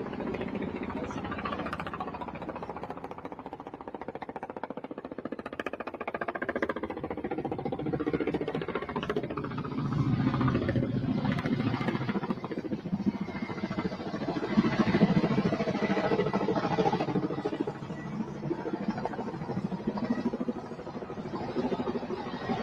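Motor vehicle engines and road traffic, a continuous rumble that swells about ten seconds in and again around fifteen seconds in.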